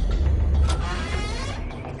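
A deep low rumble, loudest in the first second and easing off after.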